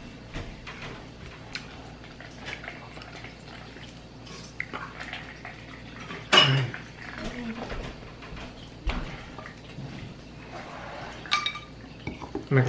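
Kitchen clatter: dishes and utensils clinking and knocking in short, scattered strokes, with one much louder clank about six seconds in.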